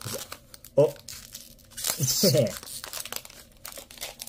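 Foil wrapper of a trading card pack crinkling and tearing as it is handled and opened by hand, in short rustles and clicks.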